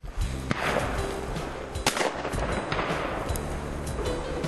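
Shotgun shots at pheasants: a few sharp reports, the loudest a little under two seconds in.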